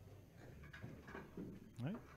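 Faint clicks of pool balls knocking together and a triangle rack sliding on the cloth as a rack of 10-ball is gathered, under quiet background talk.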